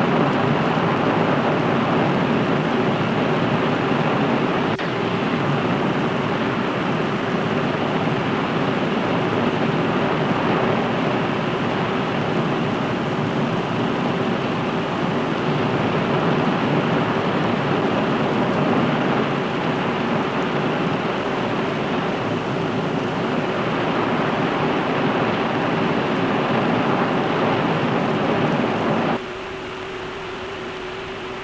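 Ramjet engine of the Burya cruise missile's sustainer stage running on a ground fire-test stand: a steady rushing noise with a faint hum beneath. The noise cuts off suddenly about a second before the end, leaving the hum.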